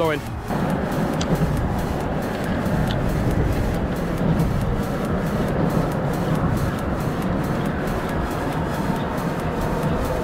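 Steady road-traffic noise from the highway bridge overhead: a continuous, even rumble with no breaks.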